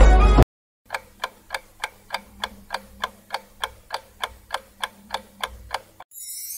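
Clock ticking steadily, about three ticks a second, as a countdown timer sound effect giving the viewer time to guess. It starts just under a second in, after the music stops abruptly.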